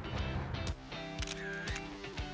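Several sharp camera shutter clicks in the middle over steady background music.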